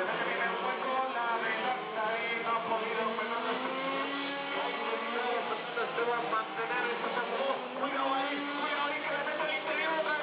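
Small engines of radio-controlled Mini Cooper race cars running and revving as they lap the circuit. They are mixed with music and a voice over a loudspeaker.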